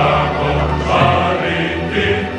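Mixed choir singing with a chamber ensemble, over sustained low notes.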